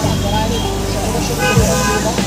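Voices of several people talking close by, over a steady low hum that comes in abruptly at the start.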